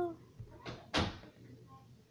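A door being shut: a short swish, then one sharp bang as it closes about a second in.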